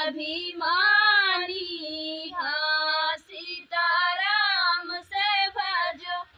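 A woman's voice singing an Awadhi folk song (lokgeet) unaccompanied, in long held, wavering phrases with short breaks for breath. The song comes to its close near the end.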